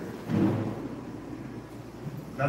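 A low, dull thump about a third of a second in, dying away over about a second in a large, echoing church.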